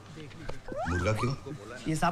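A man's voice: a quick rising, whine-like vocal sound, then a few words of Hindi speech.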